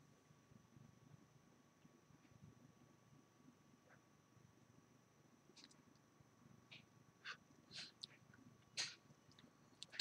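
Near silence: a faint, long drag on an e-cigarette, followed by a few soft, short mouth clicks and breaths in the second half.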